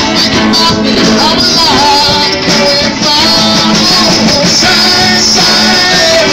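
Live rock band playing: electric guitars and a drum kit, with a male lead vocal singing over them. The recording is loud and steady.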